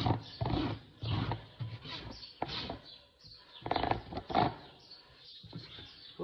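Hoof rasp filing a horse's hoof wall in a series of uneven rough strokes, with a pause about halfway through and two more strokes near four seconds in. The rasp is getting dull.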